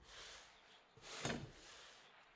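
Faint leather strap sliding and rubbing on a cutting mat as hands lay it out, with one brief louder rub about a second in.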